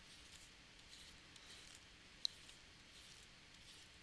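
Faint, quick scratching strokes of a pen stylus on a drawing tablet as small circles are drawn one after another, with one sharp tick about two seconds in; otherwise near silence.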